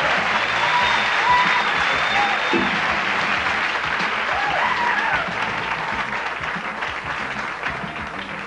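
Audience applauding a comic's walk-on, steady at first and then dying down over the last few seconds.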